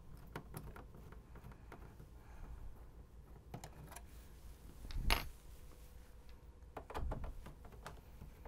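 Faint metallic clicks and taps of a screwdriver working a small screw and a thin sheet-metal retainer being lifted off the player's chassis, with one louder clack about five seconds in and a few more clicks around seven seconds.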